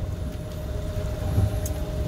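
Electric-converted cabin cruiser running under way: a steady low rumble with one constant thin whine over it.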